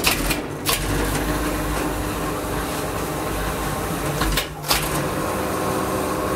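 1984 Geijer-Hissi (HIRO LIFT) platform lift starting with a click as its button is pressed, then its drive motor running with a steady hum as the platform travels. There is a brief dip with clicks about four and a half seconds in.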